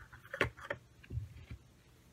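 A few small clicks and light knocks of a glass cologne spray vial and its metal cap being handled in gloved hands: a sharp click about half a second in, another just after, then two softer knocks.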